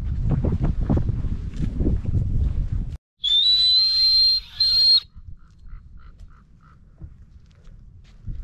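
A person's loud, shrill whistle, starting about three seconds in: it rises briefly, then holds one steady high pitch for about two seconds, with a short break partway through. Before it, wind rumbles on the microphone.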